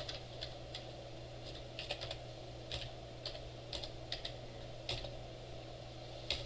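Typing on a computer keyboard: a dozen or more separate keystrokes at an unhurried, uneven pace, over a steady low hum.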